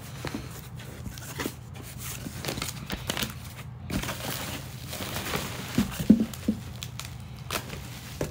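A package being opened by hand: irregular crinkling and rustling of packaging, with a few louder handling knocks about six seconds in.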